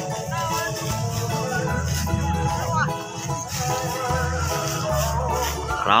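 Background music with long held notes over a deep, slowly changing bass line.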